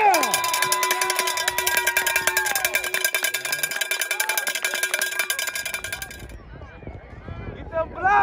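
Football spectators cheering and shouting for a touchdown, one voice holding a long high yell over the first few seconds. A fast rattling clatter runs with the cheering and stops about six seconds in, leaving quieter crowd sound.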